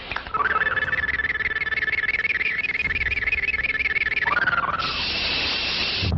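Synthesized magic-power sound effect from an old Indonesian martial-arts film. A high electronic tone rises, warbles rapidly for about four seconds and falls away, then gives way to a steady hiss near the end as the blue lightning of the power appears.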